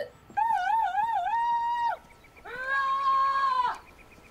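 Two long animal howls. The first wavers up and down in pitch a few times, then holds a steady higher note; the second, after a short pause, is lower and steady.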